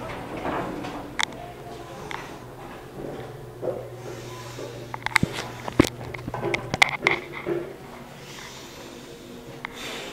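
Elevator car running with a steady low hum that stops about three-quarters of the way through, with a cluster of sharp clicks and knocks shortly before it stops.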